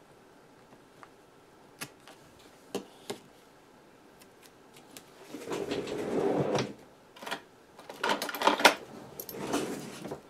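Hands fetching and handling scissors and supplies at a desk: a few light taps and clicks, then two spells of rustling and clattering, about five seconds in and again from about eight seconds.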